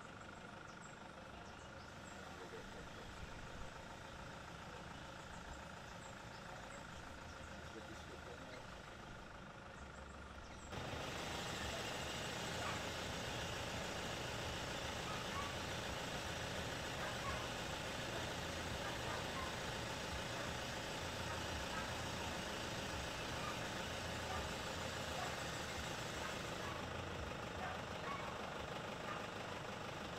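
Steady outdoor background noise with an engine running. It jumps abruptly louder and brighter about a third of the way through and stays that way.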